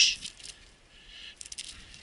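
Mountain bike rolling along a trail covered in dry leaves, with a soft rustle from the tyres and a short burst of light metallic rattling from the bike about one and a half seconds in.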